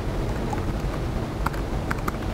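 Steady room noise with a few faint clicks of laptop keys being typed in the second half.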